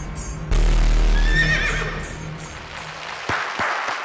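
Action-film soundtrack: music with a deep bass boom about half a second in and a horse whinnying, then studio audience clapping near the end.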